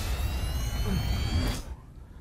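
Sci-fi spacecraft thruster sound effect for a jump to light speed: a loud rush of noise over a deep rumble, with two thin whistling tones slowly rising. It cuts off about one and a half seconds in.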